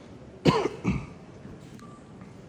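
A person coughing twice in quick succession, the coughs about half a second apart and loud against the quiet room.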